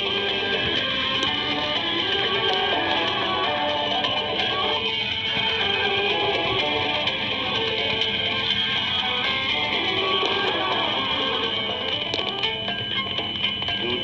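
Guitar music from Radio Algeria's 252 kHz longwave AM broadcast, played through a radio receiver's speaker.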